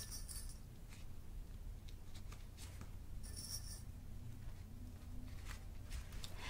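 Faint handling sounds of folded fabric pieces being worked into place and pinned: soft rustling with small clicks and scratches, with brief rustles near the start and about three seconds in.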